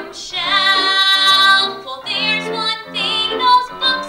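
A young woman singing a musical-theatre song into a microphone with piano accompaniment. About half a second in, she holds one long note with vibrato, then goes on in shorter phrases.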